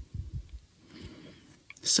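Soft handling noise of knitting: hands working a circular needle and yarn while slipping a plastic stitch marker onto the needle. A few dull low knocks in the first half-second, then faint rustling.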